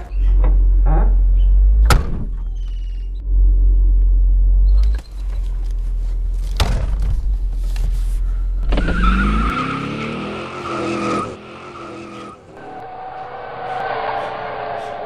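A car driving off: a heavy low rumble inside the car with a sharp knock about two seconds in and another near seven seconds, then the engine revving up with rising pitch around nine seconds in, settling into a steadier engine drone near the end.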